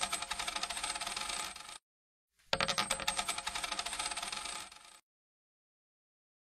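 Sound effect of a stream of coins pouring and clinking, played twice with a short break about two seconds in. It cuts off abruptly about five seconds in.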